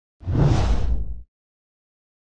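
A whoosh sound effect for an animated title intro. It is one noisy sweep of about a second, heavy in the low end, that cuts off sharply.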